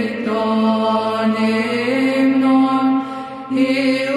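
Orthodox Byzantine chant: voices holding long, slow notes over a steady low drone (the ison). The melody moves to a new note about two seconds in and again near the end, with a brief drop in volume just before.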